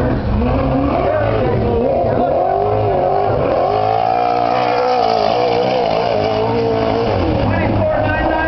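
Dirt-track modified race car's engine revving up and down as the car slides through a turn, its pitch falling off and climbing again with the throttle several times.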